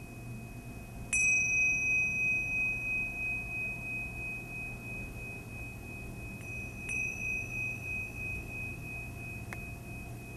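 Tingsha cymbals struck together twice, about a second in and again some six seconds later, each strike leaving a high ringing tone that pulses slowly as it fades. Rung to call the end of savasana.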